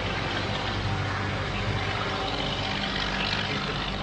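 Steady background noise in an old lecture recording: an even hiss with a low, constant hum underneath and no distinct event.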